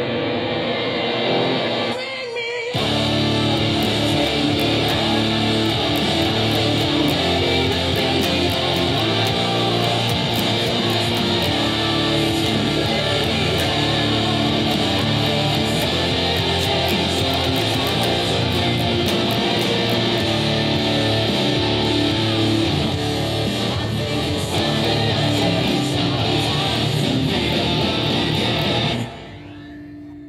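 Distorted electric guitar playing a heavy metal song with a full band sound. There is a brief dip about two seconds in, and the music cuts off about a second before the end, leaving a single note ringing.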